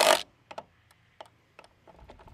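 Roof-rack crossbar and clamp hardware being handled while the bar is centered on its mounts. A brief rush of noise at the start, like the bar sliding, is followed by a few faint, scattered clicks.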